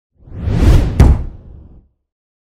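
Intro sound effect: a loud whoosh that swells up and ends in a sharp impact hit about a second in, then dies away.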